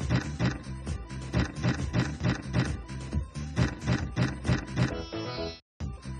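A video slot machine's free-games music with a steady beat, playing while the reels spin. It breaks off briefly near the end and then starts again.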